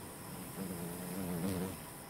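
Insects chirring steadily in the background, with a faint low wavering hum lasting about a second in the middle.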